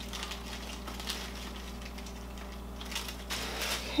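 Dried broccoli pieces clicking and rustling as they are picked off a dehydrator tray and dropped into a plastic bag, light scattered ticks that pick up about three seconds in, over a steady low hum.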